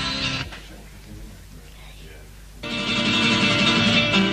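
Strummed guitar music: loud at first, dropping to a softer stretch about half a second in, then loud again for the last second and a half.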